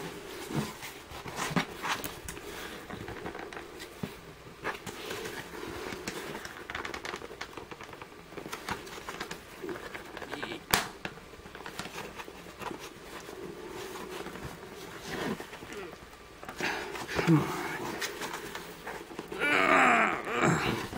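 Scattered clicks, knocks and creaks of an exit sign's housing being handled and pried at, trying to separate a glued-on cover. One sharp click comes about eleven seconds in.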